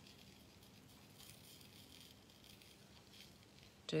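Embossing powder sprinkling faintly from a small jar over a metal frame embellishment and onto paper.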